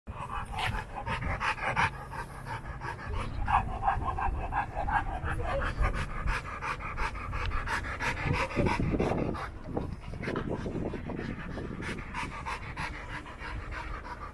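A dog panting rapidly and steadily right at the microphone, tongue out.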